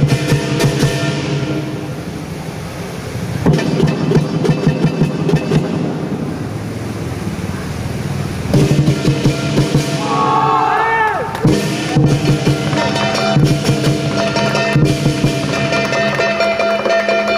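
Southern lion dance percussion: a large drum beaten in fast, dense strokes with clashing cymbals and a gong. The beating eases off twice, about two and six seconds in, then builds back up loud each time.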